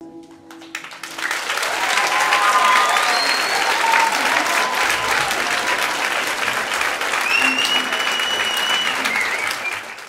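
The last acoustic guitar chord rings out, then an audience applauds steadily, with some cheers and whistles in the crowd. The applause fades away near the end.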